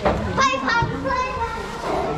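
Speech: people talking, with a high-pitched child's voice among them.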